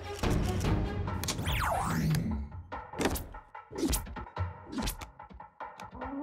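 Tense film background score: dense music, then a falling swoosh about two seconds in, followed by three sharp hits roughly a second apart.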